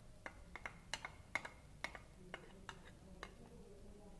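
A knife tapping and scraping inside an upturned bowl, knocking ghee out into a steel pot: about a dozen faint, irregular light clicks over three seconds.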